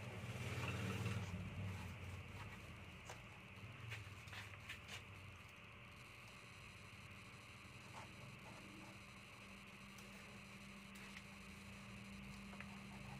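Faint scratching and scattered small clicks of a utility knife blade working along the glued edge of an LCD TV panel, over a steady low hum.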